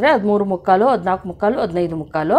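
A woman speaking in Kannada with no other sound standing out.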